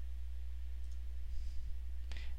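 A faint computer mouse click over a steady low electrical hum.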